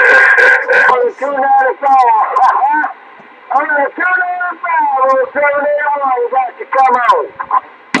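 Another CB station answering over the base radio's speaker: a thin, narrow-band voice that the ear can barely make out, opening with a burst of static as the incoming signal keys up.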